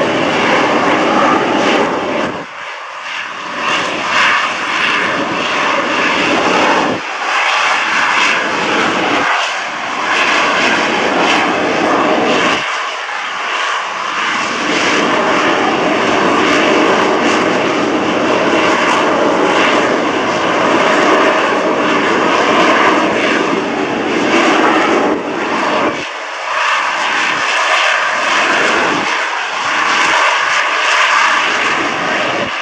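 Harrier jump jet hovering on its Rolls-Royce Pegasus vectored-thrust turbofan: a loud, continuous jet roar. The deep part of the roar briefly drops away several times as the jet turns.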